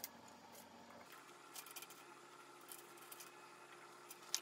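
Near silence: faint room tone with a few faint, short ticks.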